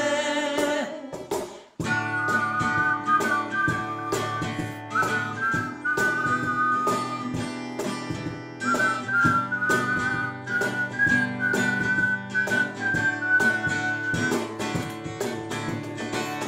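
Instrumental break of an acoustic song: a whistled melody, mostly in two-part harmony, over strummed acoustic guitar and cajon beats. The band stops briefly about two seconds in, then comes back in.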